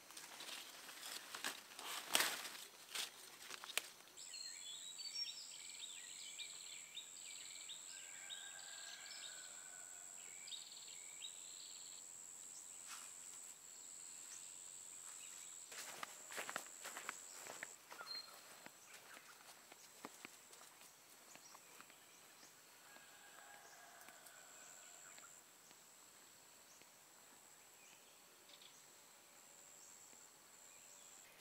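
Faint forest ambience: rustling footsteps through vegetation in the first few seconds and again around the middle, a steady high-pitched insect drone that sets in about four seconds in, and scattered short bird chirps.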